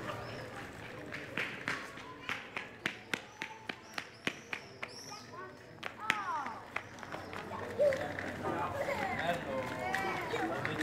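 Footsteps on a paved street at a walking pace of about three steps a second. People's voices come in from about eight seconds.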